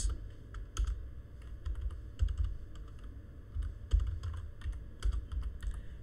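Computer keyboard keystrokes in an irregular run of single clicks with short gaps between them, as text is deleted and retyped.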